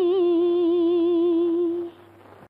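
Unaccompanied humming from a Tamil film song: one long held note with a light waver, which stops near the end. A faint low steady hum runs underneath.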